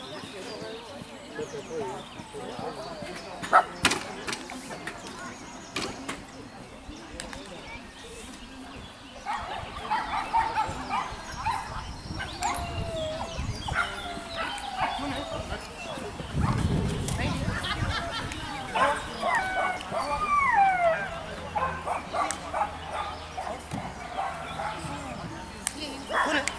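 Small dog barking and yipping in short, repeated calls as it runs, busiest in the second half, with voices in the background. One sharp knock sounds a few seconds in.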